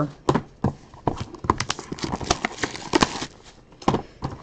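Irregular taps, knocks and rustles of cardboard trading-card boxes being handled and set down on a table.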